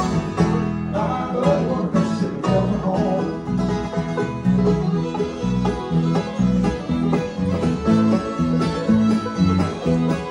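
Live bluegrass band playing: banjo and acoustic guitar over a steady electric bass line, with fiddle in the mix.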